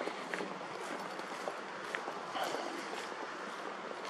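Footsteps of a person walking on a paved path, heard as a few faint ticks over a steady hiss of outdoor air.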